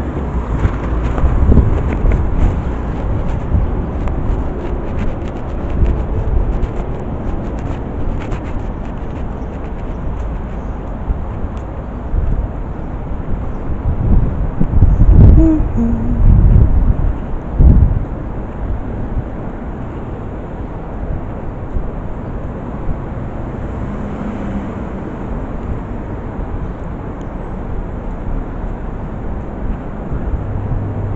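City street noise: a steady low rumble of traffic, picked up on a body-worn camera, with a louder stretch about halfway through.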